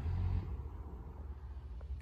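Low, steady background rumble with no clear event, and a faint click near the end.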